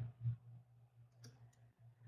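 A faint, short click about a second in, against a low steady electrical hum in an otherwise quiet pause.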